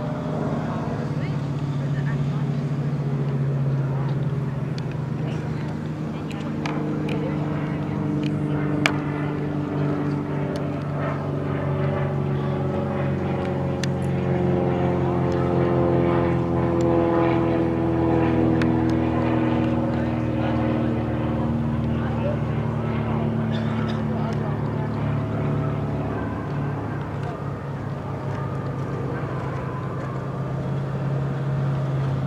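A steady engine drone. In the middle a second, higher engine sound swells and slowly falls in pitch, with scattered light clicks.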